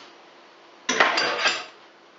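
A brief clatter of kitchenware about a second in: a few quick knocks and clinks of a small pot and utensil, lasting under a second.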